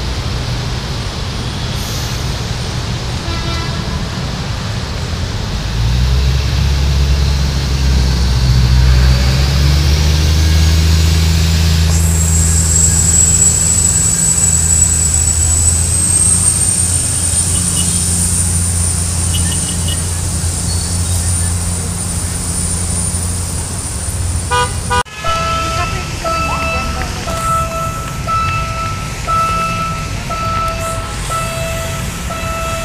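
Diesel multiple-unit train's engine running, growing louder about six seconds in, with a high whine that rises and then holds. After a sudden break near the end, a horn sounds in short repeated toots.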